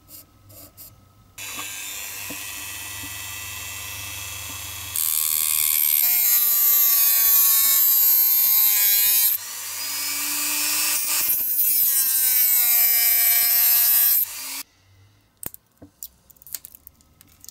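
Small handheld rotary tool with a thin cutting disc cutting a piece of plexiglass. It is switched on about a second and a half in and runs with a steady whine, which grows louder and sinks in pitch as the disc bites into the plastic. It spins back up briefly between two cuts and is switched off near the end.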